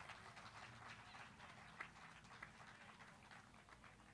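Near silence: faint outdoor background with a couple of faint ticks.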